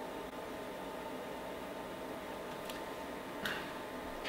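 Steady low hum and hiss of powered bench test equipment running, with faint steady tones in it; a brief soft rustle about three and a half seconds in.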